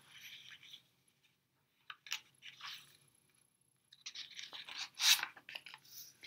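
Pages of a hardcover picture book being turned and handled: faint paper rustles and a few soft clicks, the loudest rustle about five seconds in.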